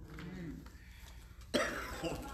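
A person coughing once, a short sudden burst about one and a half seconds in, after a quiet pause.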